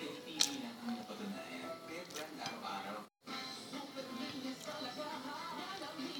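Television sound in the room: voices talking over background music, with a sharp click about half a second in. The sound cuts out completely for a moment just after three seconds.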